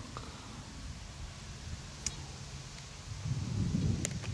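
Faint outdoor background of low wind rumble on the microphone, with two light clicks; the rumble grows louder in the last second or so.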